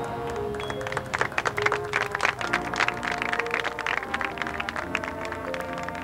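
Marching band playing, with brass holding chords under a dense run of sharp percussion hits through the middle.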